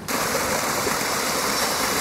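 Water of a man-made rocky cascade fountain rushing steadily over stones.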